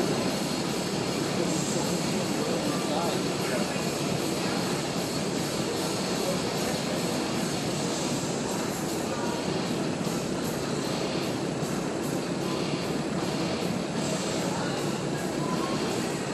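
Steady roar of a large open hall, with indistinct background talk and no distinct events.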